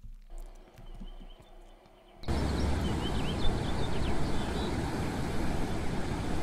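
Seaside outdoor ambience that starts suddenly about two seconds in: a steady rush of noise, heaviest in the low end, with a few short bird chirps soon after. Before it there is only faint, quiet room tone.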